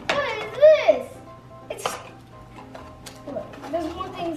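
A child's high, wordless exclamation sliding up and down, then rustling and light knocks as a small cardboard advent-calendar box and its plastic toy are handled, over quiet background music.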